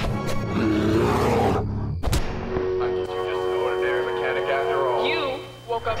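Film soundtrack: music under a growling, bear-like roar and sharp fight hits, with a loud impact about two seconds in. After the impact, steady held music tones carry on.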